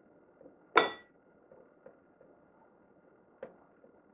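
A kitchen utensil clinks once sharply against a glass dish about a second in, with a brief ring, followed by a fainter tap near the end.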